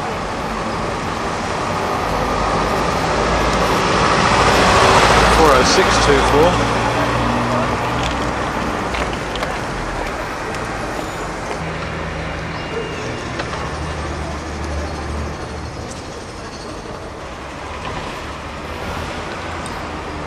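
Diesel bus engines and town-centre road traffic. A bus passes loudest about five seconds in, and a lower engine rumble continues after it.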